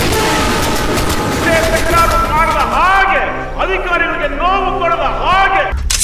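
Film background score: a wordless vocal line sung in short rising-and-falling phrases over a low held drone, after a noisy rush in the first second or so.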